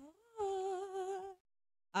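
A woman humming a single note that slides up at the start, then holds with a slight waver for about a second before cutting off abruptly.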